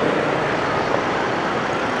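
Steady city street traffic: motorbikes and cars passing close by, an even wash of engine and tyre noise with no single event standing out.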